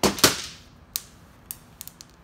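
Sharp metallic clicks and a short clatter, a loud burst at the start and then three or four single clicks: a socket and a quick-disconnect coolant fitting being handled and unscrewed from a turbocharger.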